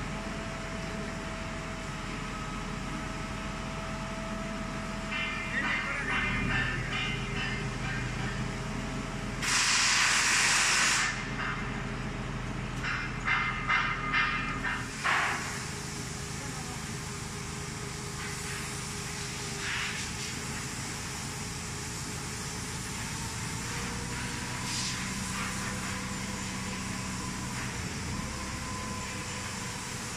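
Crane engine running steadily, working the chains of a mechanical rock grapple. About ten seconds in there is a loud hiss lasting a second or two. Voices can be heard now and then.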